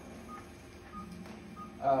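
Patient monitor giving short, high beeps about every two-thirds of a second, the pulse-synchronous tone of a pulse oximeter, over a faint steady hum from operating-room equipment.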